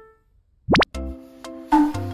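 Background music stops, and after a short pause a quick rising pop sound effect, two fast upward sweeps, plays. About a second in, new light music with a steady beat starts.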